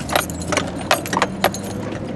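Things in a truck cab clinking and rattling in quick, irregular clicks as the truck crawls over a rough dirt track, with the engine's low hum underneath.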